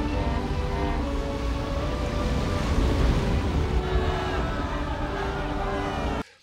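Film soundtrack: orchestral music with long held notes over a steady deep rumble and a wash of noise, cutting off suddenly just after the end.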